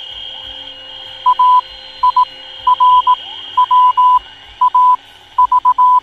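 Morse code: a single-pitched beep keyed in short and long bursts, over a steady high whistle and hiss of radio noise, played as the show's intro sound.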